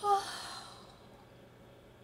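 A woman's deliberate yawn to release tension: a brief voiced "ah" at the start that trails off into a breathy exhale, fading within about a second.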